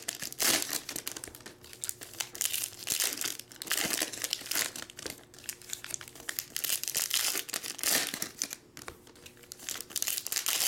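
Foil wrappers of 2019/20 Panini Hoops basketball card packs crinkling in irregular bursts as they are torn open and handled.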